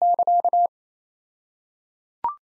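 A Morse code sidetone keyed at 28 words per minute, sending the end of the repeated punchline "It was already stuffed" as one steady tone in quick dots and dashes. It stops about two thirds of a second in.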